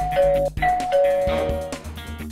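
Doorbell chime ringing a two-note ding-dong, a higher note then a lower one, twice in a row, the second time held longer, over background music with a steady beat.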